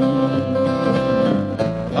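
Acoustic guitars strumming the accompaniment of a country song, between sung lines.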